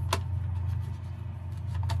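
A farm machine's engine running steadily with a low hum. Two sharp clicks, one just after the start and one near the end, come as the grinder head is fitted onto a Martin Lishman moisture meter.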